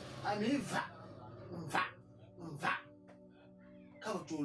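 A woman's voice giving short, sharp cries, two of them about a second apart near the middle, over steady background music.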